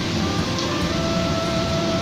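Steady rushing background noise of kitchen ventilation, with a few faint held tones over it from about half a second in.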